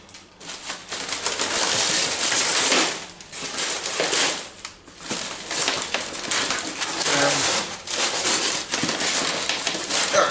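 Clear plastic wrapping being pulled and crinkled off a lamp base by hand: a dense crackling rustle, with brief lulls about three and five seconds in.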